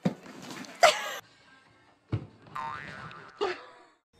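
Cartoon sound effects: sudden hits and a springy, wobbling boing, in short separate bursts with a brief gap of near silence between them.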